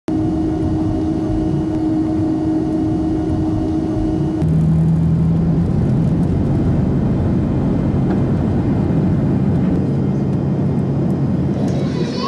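Jet airliner cabin noise from a window seat on the ground: a steady, loud engine hum and rumble. The hum's pitch changes abruptly about four seconds in, and the sound grows slightly louder.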